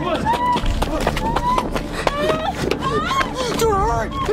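Frantic shouted voices and high-pitched cries and screams from people running and scrambling into a car.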